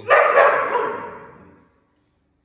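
Anxious poodle barking from inside a metal dog crate: two loud barks in quick succession, the sound trailing off over about a second.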